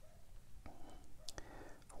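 Faint swishing of a watercolour brush moving over paper, with a few light clicks.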